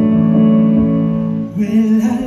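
Live band playing a slow intro, holding a steady chord; about one and a half seconds in, a woman's singing voice comes in over it.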